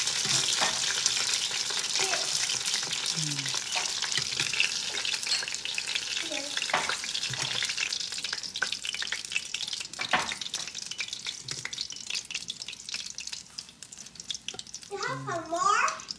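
Spring rolls sizzling and crackling in shallow oil in a stainless steel skillet, with a few sharp clicks of metal tongs as the rolls are lifted out. The sizzle thins out as the pan empties.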